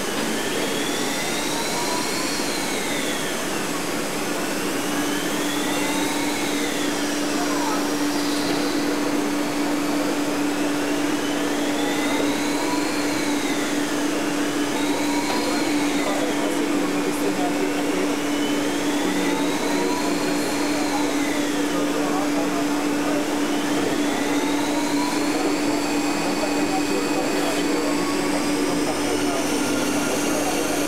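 Lathe turning a metal shaft: a steady hum under whines that rise and then fall in pitch, about one every four to five seconds.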